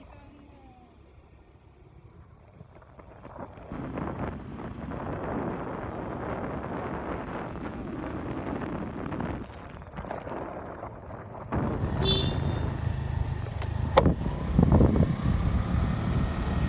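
Motorbike on the move: rushing wind over the microphone and engine and road noise, which swell about three seconds in as the bike gathers speed. It grows louder still from about twelve seconds, with two sharp clicks soon after.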